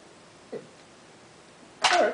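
Near-quiet room tone with a faint steady hiss, broken by one brief low sound about half a second in; just before the end a man's voice starts speaking loudly.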